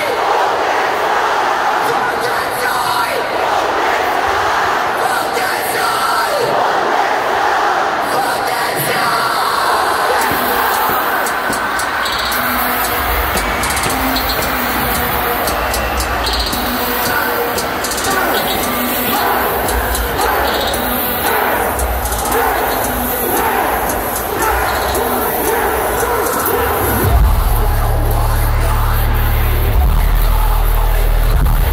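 Large arena crowd shouting and cheering as one dense roar of voices. Deep bass from the PA comes in now and then about halfway, and a heavy sustained bass sets in near the end.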